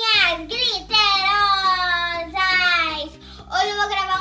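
A young girl's voice singing out long, drawn-out, high notes that slide downward, over background music whose bass comes in just after the start.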